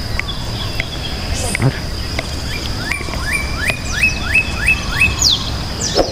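A bird calling: a run of about six quick, rising whistled notes a little past halfway, then a couple of higher falling whistles. All of this sits over a steady high-pitched whine and low outdoor background noise.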